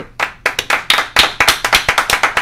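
Hands clapping in a quick, uneven round of applause.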